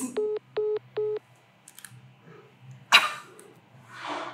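Mobile phone call-ended tone: three short, evenly spaced beeps of one pitch, the sign that the other party has hung up. About three seconds in comes a short sharp rush of noise, and a softer one near the end.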